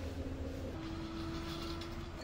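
A steady low mechanical hum, like an engine or motor running, with a faint steady tone above it that steps up in pitch about three-quarters of a second in.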